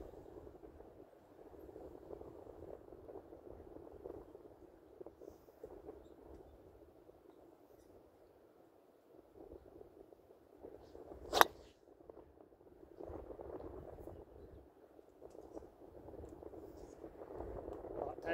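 A single sharp crack of a driver's clubface striking a golf ball off a tee, about eleven seconds in, over faint steady background noise.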